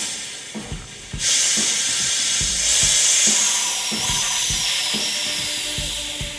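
Compressed gas hissing out of a Benjamin Discovery .22 pre-charged pneumatic rifle's reservoir as a degassing tool is turned slowly, emptying the rifle before it is charged with CO2. The hiss starts about a second in, carries a faint whistle falling slightly in pitch, and slowly fades toward the end. Background music with a steady beat runs underneath.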